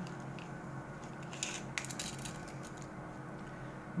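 Faint handling noise: soft rustling and a few light clicks as a tape measure is brought over and laid against a crocheted cord bag panel.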